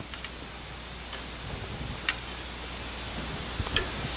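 A few light clicks of metal grilling tongs against the grill grate and chops as pork loin chops are turned, spaced about a second apart and clearest near the end, over a steady hiss from the grill.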